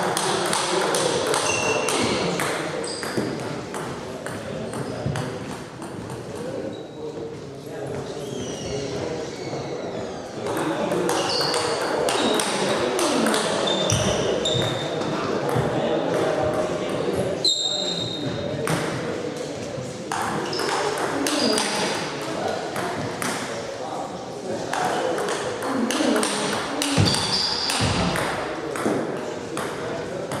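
Table tennis ball clicking off bats and bouncing on the table in rallies, a string of short sharp pings, over a steady murmur of voices in the hall.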